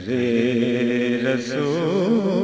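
Male voice singing a naat (Urdu devotional poem), holding one long vowel whose pitch wavers in ornaments in the second half.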